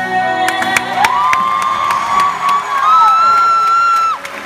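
A woman's singing voice slides up into a long high held note, then climbs to a higher note near the end and cuts off. Audience cheering and scattered claps sound over it.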